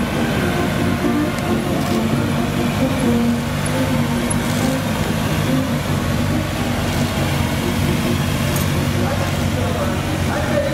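A formation of police motorcycles riding past at low, steady parade speed, their engines running in an even drone.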